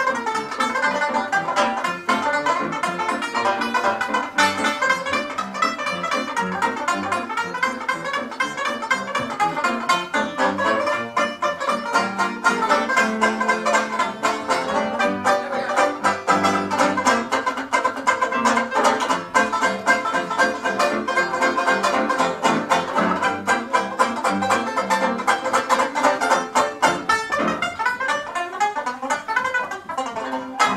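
Tenor banjo picked and strummed rapidly with a plectrum, accompanied by piano, in a virtuoso 1920s novelty banjo piece.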